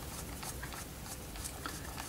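Mini screwdriver turning a small screw into the lens cover rim of an LED traffic light module: faint, irregular ticks and scratching.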